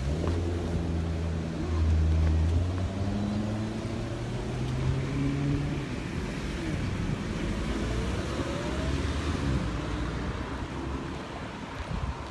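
Road traffic passing on a wide city street: car engines and tyre noise, with steady low engine notes and one vehicle's engine rising in pitch as it accelerates about seven to nine seconds in. Loudest around two seconds in.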